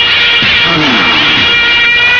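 Film score with sustained high held notes, over which a voice wails, falling and wavering in pitch, about half a second in.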